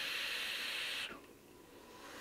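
A draw on a MarsTeam Muramasa RDTA, a steady airy hiss of air pulled through the tank's airflow as the coil fires. It stops about a second in, leaving near quiet while the vapour is held.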